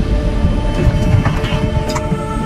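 Background music with sustained notes over a steady low rumble.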